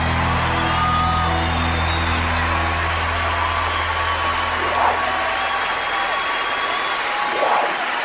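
A live worship band's final held chord, a low sustained bass note under higher tones, dying away about five to six seconds in, while the congregation applauds and cheers, with brief louder flurries of crowd noise near the end.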